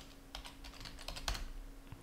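Computer keyboard being typed on: an irregular run of quick key clicks as a password is entered, over a faint steady hum.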